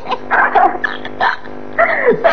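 A person's voice in several short, sharp bursts.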